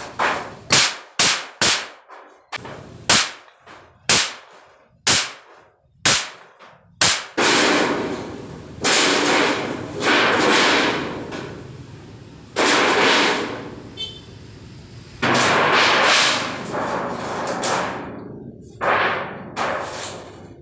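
Claw hammer striking a galvanized iron sheet folded over a wooden beam: sharp metallic blows, about two a second, for the first seven seconds. Then longer rattling, scraping stretches of a second or two each as the sheet metal is pressed and shifted by hand, with a few more knocks near the end.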